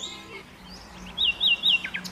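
A bird chirping: three quick, high chirps in a row in the second half, ending in a short falling note.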